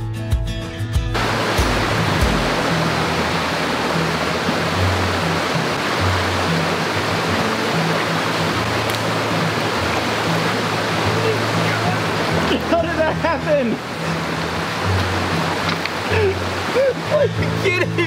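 Steady rushing of a shallow mountain stream's flowing water, with background music's low bass notes underneath. The music's fuller, guitar-like part stops about a second in.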